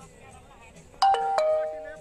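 A bell-like electronic chime of a few notes struck in quick succession, like a doorbell ding-dong. It comes in suddenly about a second in and rings on before fading.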